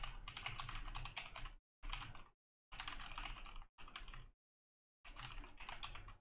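Typing on a computer keyboard: quick runs of keystrokes in five spurts, with short pauses between them.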